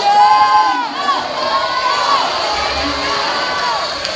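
Crowd of swim-meet spectators and teammates cheering and yelling, many high-pitched shouts overlapping, loudest in the first second.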